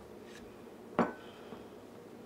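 Handling of a plastic jar of light mayonnaise and a measuring spoon: one sharp click about halfway through, with a brief faint ring after it and a few faint ticks around it.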